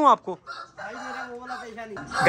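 A rooster crowing: one long held call starting about half a second in, softer than the nearby voices.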